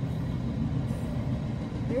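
Double-stack intermodal freight train rolling past: a steady low rumble of its wheels on the rails, heard from inside a car.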